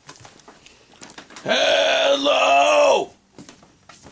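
A person's voice holding one long, steady vowel sound for about a second and a half, starting about halfway in.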